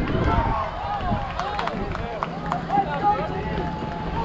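Unclear voices of players and spectators calling out and chattering at a baseball field. A few sharp knocks come in the middle.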